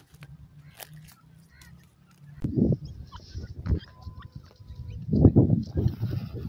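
Gusts of wind buffeting the microphone, starting about two and a half seconds in and strongest near the end, over a faint low hum. Faint high chirps can also be heard.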